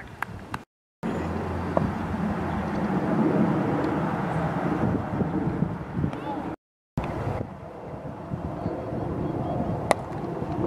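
Steady outdoor field noise with faint voices, cut twice to brief silence, then near the end one sharp crack of a cricket bat striking the ball.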